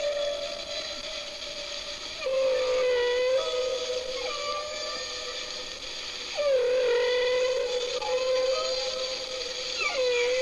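Three long, wavering, howl-like wailing notes, each held for several seconds at nearly the same pitch. The second and third slide down into place about two seconds in and past six seconds.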